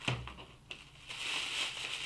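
Plastic bubble wrap crinkling as it is handled and pulled open, with a couple of sharp clicks in the first second and a soft, steady crinkle from about a second in.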